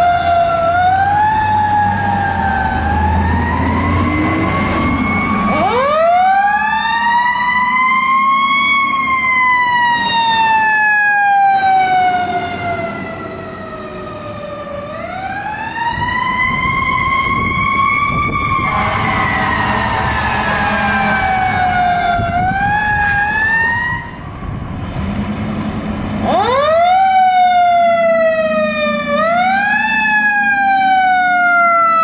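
Fire truck sirens wailing, each sweep rising quickly and falling slowly over several seconds, repeated several times, with a truck engine rumbling under the first few seconds. Near the end a siren winds up in shorter, quicker rises.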